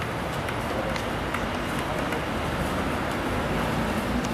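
Outdoor street ambience: a steady rumble of traffic with a few short, sharp clicks.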